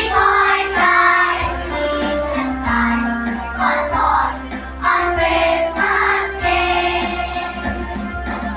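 A children's choir singing together in phrases of held notes, each a second or so long with short breaks between them, over a low steady hum.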